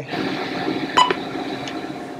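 A single short electronic beep from a Heidenhain Quadra-Chek 1202 digital readout about a second in, as a touch-key press or point entry registers. A steady hum runs underneath.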